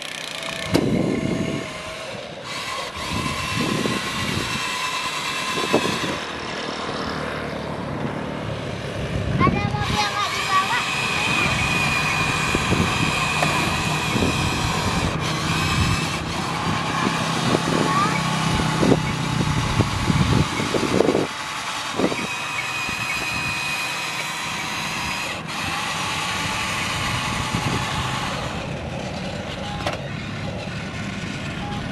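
Whine of the small electric gear motors in remote-control toy construction vehicles, starting and stopping in spells of several seconds as the toys are driven and worked.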